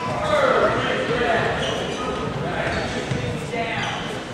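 Voices shouting across a reverberant gym, with scattered low thuds.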